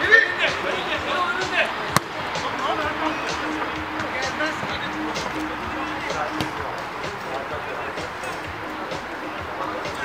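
Sounds of a small-sided football match: players' scattered shouts and chatter across the pitch, and one sharp kick of the ball about two seconds in.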